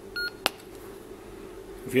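PNI Escort HP 62 CB handheld giving a short electronic beep as it powers on with the PTT and ASQ keys held, the key combination that unlocks its higher-power mode, followed by a single click about half a second in.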